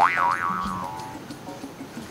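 A cartoon-style comedy 'boing' sound effect: a springy pitched tone that wobbles up and down twice, then slides down and fades away over about a second.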